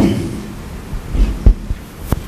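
Microphone handling noise: low, dull thumps and knocks as the microphone and its stand are adjusted, the loudest about one and a half seconds in.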